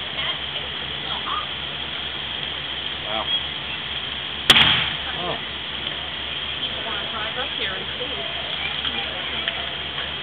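A single sharp bang about halfway through, with a brief echo after it, over a steady low hum and distant voices.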